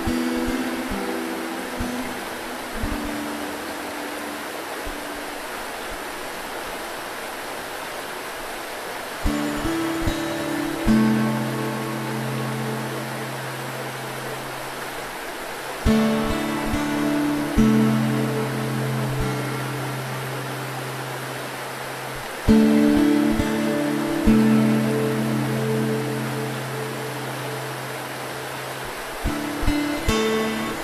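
An acoustic guitar plays slow, sparse chords, each struck and left ringing, over the steady rushing of a river. For several seconds after the start the guitar dies away and mostly the water is heard, before the chords come back.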